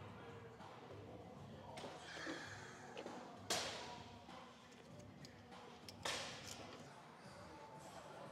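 Two sharp knocks from a prone leg curl machine as it is set down and released after a set, the first about three and a half seconds in and the louder, the second about six seconds in. Faint music plays underneath.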